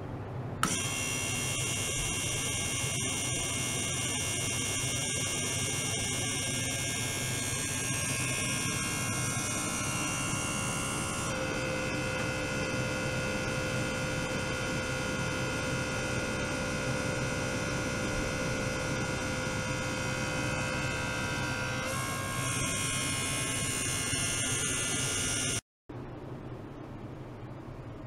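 Ultrasonic transducer running in a small water tank, giving a steady whine of several high-pitched tones over a low hum. The mix of tones shifts abruptly about a second in, again about 11 seconds in and about 22 seconds in, and the sound cuts off just before the end.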